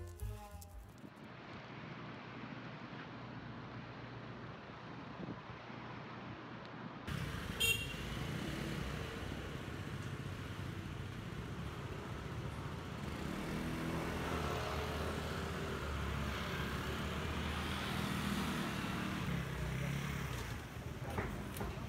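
Street traffic noise with scooters riding by. A brief high-pitched beep comes about seven seconds in, and the engine hum grows a little louder in the second half.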